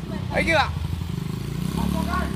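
A motorcycle engine running with a low, steady, pulsing rumble that gets a little stronger in the second half, with a brief voice about half a second in.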